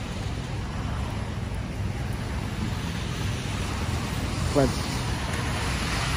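Steady traffic noise from wet city streets: an even hiss with a low rumble beneath it.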